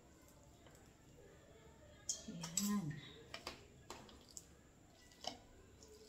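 Light, scattered clicks and scrapes of metal utensils against a plastic container as a block of set coconut-milk gelatin is scraped into shreds. A brief murmur of a voice comes about two seconds in.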